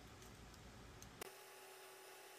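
Near silence: faint room tone, with one faint click a little past halfway.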